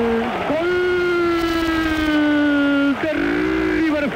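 Radio football commentator's drawn-out goal shout, "¡Gol!" stretched into long held notes. The note carried over from before ends just after the start; after a quick breath a new one is held for about two and a half seconds, drifting slightly down in pitch, then a shorter held note follows near the end.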